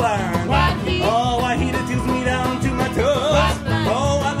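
Bluegrass string band playing: upright bass, mandolin, acoustic guitar and banjo, with a voice singing long, sliding notes over them.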